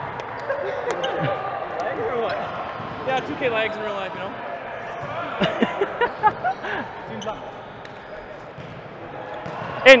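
Volleyballs bouncing on a gym floor, with a few sharper thuds about halfway through, against the background chatter of players in a large hall. A shout comes right at the end as play starts.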